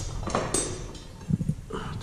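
Short lengths of steel rebar knocking and clinking against each other and the floor as they are picked through by hand, a few separate knocks.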